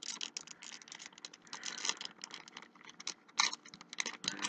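Foil Yu-Gi-Oh booster pack wrapper crinkling as it is torn open by hand: an irregular run of crackles, thinner in the middle and louder near the end.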